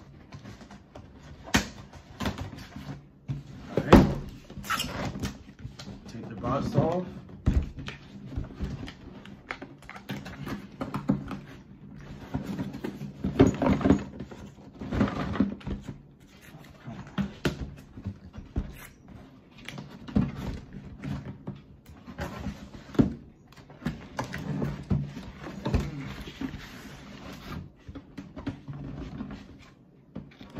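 Cardboard box being handled and torn open: packing tape and cardboard tearing and flaps scraping, with many irregular knocks on the box, the loudest about four seconds in and again around thirteen seconds.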